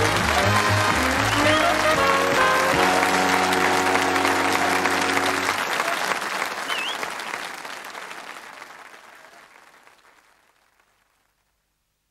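Studio audience applauding over a short music sting; the music stops about halfway through and the applause fades out to silence shortly before the end.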